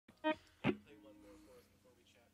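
A short pitched blip, then a single drum hit from a drum kit whose low tone rings on for about a second, with faint talking underneath.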